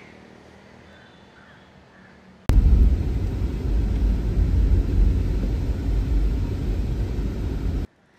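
A quiet stretch with a faint steady hum. About two and a half seconds in, a loud, steady, low rumble of car and traffic noise, heard from inside a car in traffic, starts suddenly. It cuts off abruptly just before the end.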